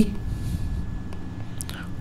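Steady low hum and hiss of the recording setup, with a few faint clicks in the second half.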